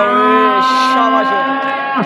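A male commentator's voice holding one long drawn-out call at a steady pitch for about two seconds, with a short hiss a little over half a second in.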